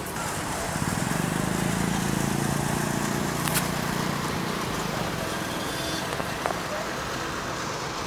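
Road traffic noise with a vehicle engine passing close by. Its low hum swells about a second in and fades out around the middle.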